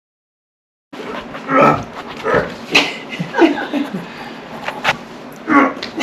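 Silence for about the first second, then a run of short, strained human grunts and breathy exclamations with a few sharp clicks, from people straining as a rappel rope is hauled hard against a hanging person's weight.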